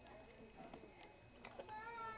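Faint handling of books and paper on a shelf, a few soft clicks, and near the end a brief high-pitched voice-like sound.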